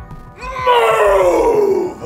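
A loud, drawn-out human wail or groan, about a second and a half long, sliding steadily down in pitch, over background music.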